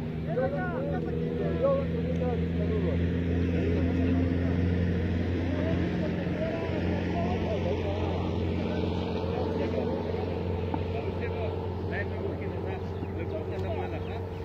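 A steady low motor hum, with indistinct voices over it.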